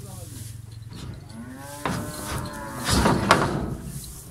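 A cow mooing once: one long call that starts a little over a second in, rises in pitch, and ends loudest and roughest near the three-second mark.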